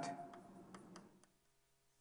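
Faint, irregular clicks of chalk tapping on a blackboard as an equation is written.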